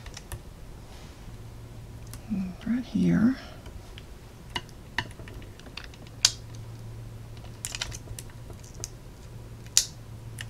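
Scattered light, sharp clicks and taps of a pick-up tool and small adhesive gems against a plastic gem sheet and a cutting mat, about ten in all at irregular intervals. A short hummed murmur of a woman's voice comes about two to three seconds in, over a steady low electrical hum.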